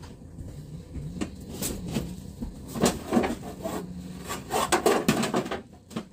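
Irregular knocks and clatter of dishes and containers being handled at a kitchen counter, busiest about three seconds in and again around five seconds.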